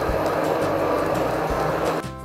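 Handheld immersion blender running steadily in a jug of thick pumpkin and orange purée, blending in the added salt and pepper, then cutting off suddenly at the end.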